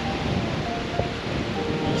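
Steady rushing noise of wind on the microphone mixed with small waves washing onto a sandy beach.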